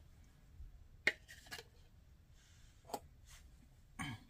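A few light clicks and taps from a metal spoon and a glass jar being handled, scattered through otherwise quiet room tone: one about a second in, another half a second later, and two near the end.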